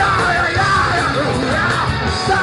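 Hardcore punk band playing live at full volume: distorted guitars, bass and drums under a shouted vocal, recorded from within the crowd.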